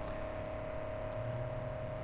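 Softwash trolley's 12 V Everflo diaphragm pump (8.3 L/min, 70 psi) running steadily with a constant whine and low hum while it feeds solution to a fan spray nozzle.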